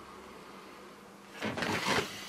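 Quiet room tone, then, about one and a half seconds in, a short burst of rustling as a person flops back onto a sofa, with a plastic sweets bag crinkling.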